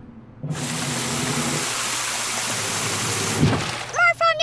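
A cartoon spraying sound effect: a steady rushing hiss, like water jetting from an elephant's trunk, lasting about three seconds. A faint low musical tone runs beneath it, and a short soft thud comes near the end.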